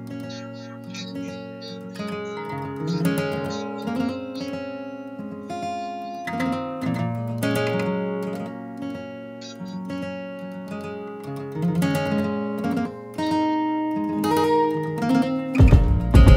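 Electric guitar playing a slow run of picked notes and chords. A loud low boom comes in just before the end.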